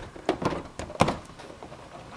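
Plastic wheel-well liner of a Subaru Outback being pushed back into place by hand: plastic rubbing with a few light knocks and clicks, the sharpest about a second in.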